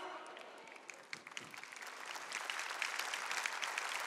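Congregation applauding after a spoken "amén": a few scattered claps at first that build into fuller, steady applause.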